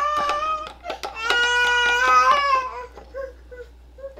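A young child crying in two long, high wails, the second ending about halfway through, with light clicks of a glass stirring rod against a cup.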